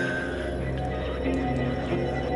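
Electronic soundtrack music: a steady droning bass under sustained layered synth tones, with a short wavering high tone right at the start.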